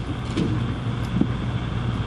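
Steady low hum and hiss of room and feed noise, with a few soft knocks as one speaker leaves the lectern and the next approaches.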